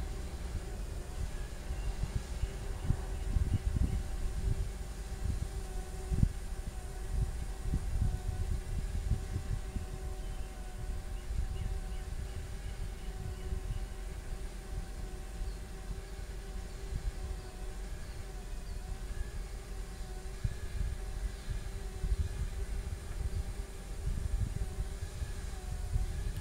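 Fuel truck engine idling with a steady hum while its pump refuels a light aircraft through a hose, over an uneven low rumble.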